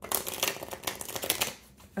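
A deck of tarot cards being shuffled: a quick run of papery card clicks for about a second and a half, then it stops.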